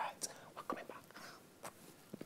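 A faint whispered voice with a few soft, short hiss-like clicks, much quieter than normal talk.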